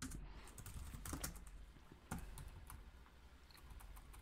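Typing on a computer keyboard: faint, irregular keystrokes as a line of code is entered.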